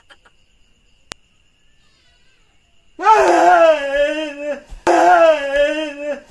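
A person's voice wailing in two long, wavering cries, the first about three seconds in and the second near the end.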